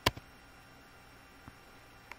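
A sharp computer-mouse click at the very start, then faint room noise with one light tick about a second and a half in.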